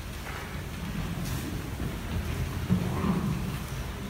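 Low, muffled rumbling and shuffling of people moving about at the altar, with one dull thump a little past the middle.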